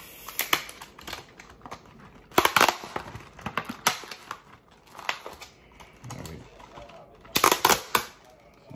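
Plastic blister pack and cardboard card of a 1/64 diecast car being pulled apart by hand: clusters of sharp crackles and snaps, loudest about two and a half seconds in and again near the end.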